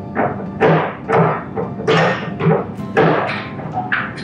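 Background music with a steady percussive beat of about two strokes a second.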